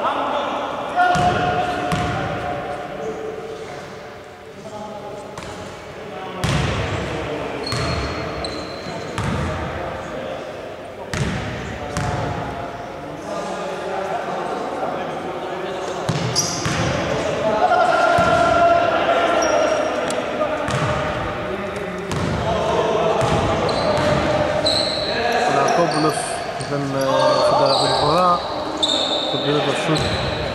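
Basketball bouncing on a hardwood gym floor during play, with repeated thuds and short high sneaker squeaks as players run the court, echoing in a large sports hall.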